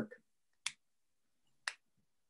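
Near silence broken by two short, sharp clicks about a second apart.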